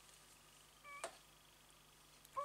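Near silence: room tone, with a brief faint squeak and a small click about a second in.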